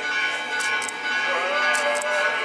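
Church bells ringing, several steady tones sounding together with a few fresh strokes, over a murmur of crowd voices.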